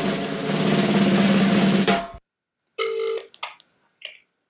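A drum roll lasting about two seconds as a transition sting; it cuts off abruptly, and a short tone follows about three seconds in.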